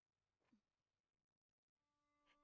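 Near silence, with one very faint, short sound about half a second in.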